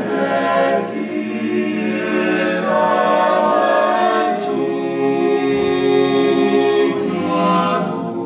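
Men's choir singing a cappella in close harmony, holding long chords that shift every couple of seconds.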